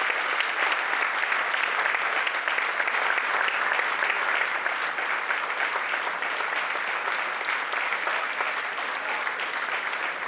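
Audience applauding steadily, a dense patter of many hands clapping that eases off slightly near the end.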